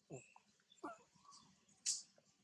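Long-tailed macaques: two short whimpering calls, each falling in pitch, about three quarters of a second apart, then a brief sharp high-pitched noise near the end, the loudest sound.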